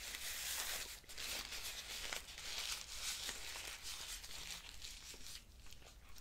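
Paper crinkling and rustling close to the microphone, a long stream of small crackles and tearing-like rustles that thins out near the end.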